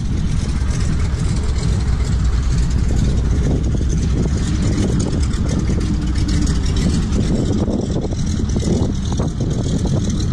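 Wind buffeting the microphone in a steady, loud rumble, with an engine drone beneath it.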